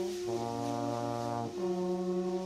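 Trombone and tenor saxophone holding long, low sustained notes in free jazz. The pitch changes about a third of a second in and again at about a second and a half, with no drums heard.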